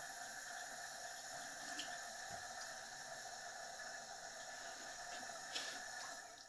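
Kitchen faucet running a thin stream into a stainless steel sink as small items are rinsed under it, faint and steady, with a couple of light clicks from the items being handled.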